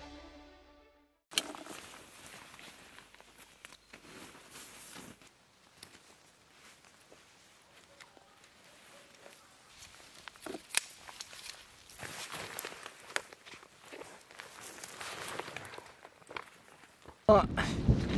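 Faint footsteps and rustling on a leaf-covered forest floor, with a few sharp clicks. The end of a music track dies away at the start, and a man's loud voice breaks in near the end.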